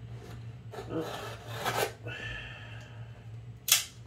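Folding knife scraping and slicing at a paper Priority Mail envelope, with rasping strokes about a second in and a short, loud rasp near the end as the blade cuts through. A steady low hum runs underneath.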